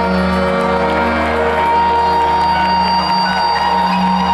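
Live rock band with orchestral-style backing playing loudly through an arena sound system, holding long sustained chords, with the crowd cheering underneath.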